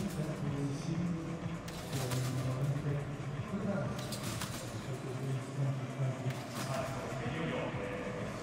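Arena ambience: faint voices and background music, with a few short thuds about two seconds apart from a gymnast bouncing on a trampoline.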